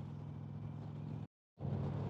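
2019 Indian Chieftain Dark Horse's Thunder Stroke 111 V-twin running steadily at highway cruising speed, a low drone under wind and road noise. The sound drops out completely for about a quarter second just past the middle, then picks up again.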